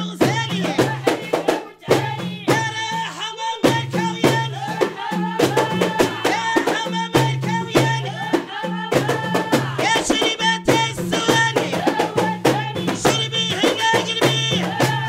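Moroccan folk song sung by women's voices over a quick, steady rhythm of hand percussion: frame drums with jingles and a goblet drum.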